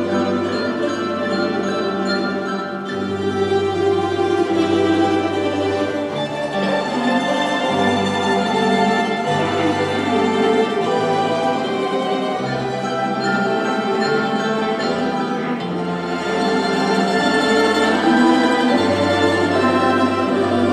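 A tamburica orchestra playing: an ensemble of plucked tamburicas with a bass line stepping from note to note beneath.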